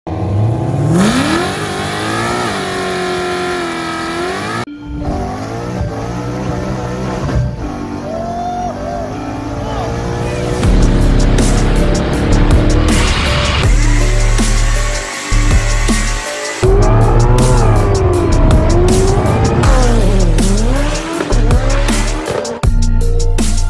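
Car engine sounds cut together in quick edits, an engine revving with tire squeal, with abrupt cuts between clips; electronic music with a heavy bass beat comes in about halfway.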